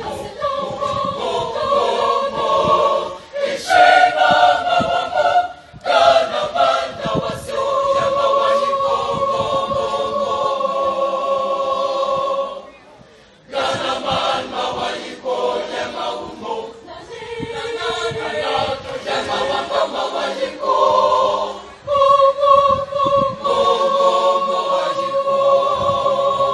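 A large mixed school choir singing in parts, holding long chords, with a short break about halfway through before the voices come back in.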